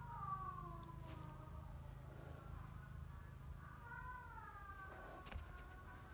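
A cat meowing faintly: two long, drawn-out calls that fall in pitch, the second starting a little over two seconds in. A soft click comes near the end.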